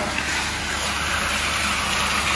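Seasoned chicken pieces sizzling steadily in a hot skillet as they are sautéed and stirred, a constant frying hiss while the meat browns and caramelizes.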